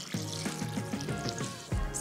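Water being poured from a glass jug onto lemon pieces in a glass chopper bowl, a steady splashing trickle, with soft background music.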